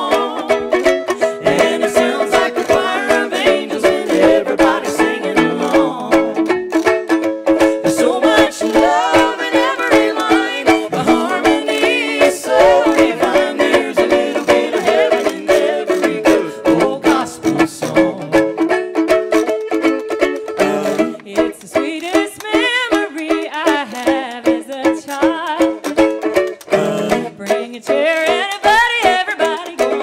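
Live acoustic country-gospel band music: a small banjo picking over a steady washboard rhythm, with held chords underneath.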